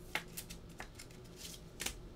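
Prizm basketball cards being slid and flicked through gloved hands as the next card comes to the front: a few soft, sharp card clicks and rustles.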